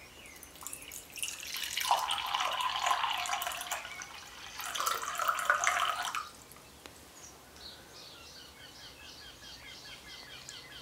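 Water being poured into a cup held in the hand, in two pours, the first starting about a second and a half in and the second near five seconds in. Birds chirp faintly once the pouring stops.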